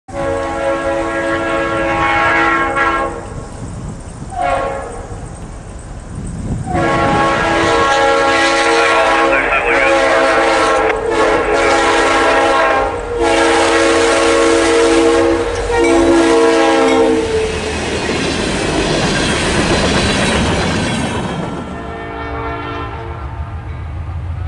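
Diesel freight locomotive air horn sounding a chord in a series of long blasts with short breaks as the train approaches, followed by the rumble and wheel noise of the train drawing near, with one fainter horn blast near the end.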